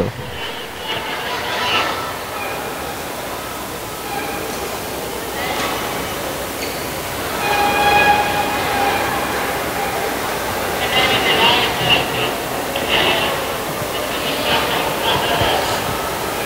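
Busy indoor badminton hall ambience: a steady murmur of background voices from the crowd and neighbouring courts, with scattered brief high squeaks, strongest about halfway through and again a few seconds later.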